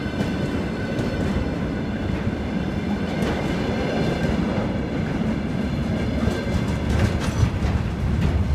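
Freight train of container flatcars rolling past: a steady rumble of steel wheels on rail, with a cluster of sharp clicks from wheels passing over rail joints about seven seconds in.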